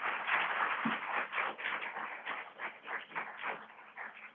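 Audience applauding: a dense patter of claps that thins out and fades away toward the end.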